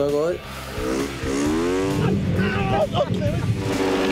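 Snowmobile engines revving, the pitch rising and then holding steady, with voices shouting over them.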